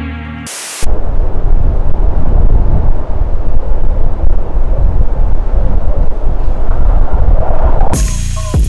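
Strong wind buffeting the camera microphone, starting about a second in: a loud, constantly fluctuating low rumble that drowns out everything else.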